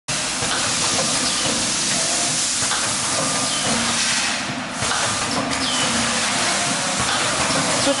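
Steady, loud hissing noise with faint voices in the background.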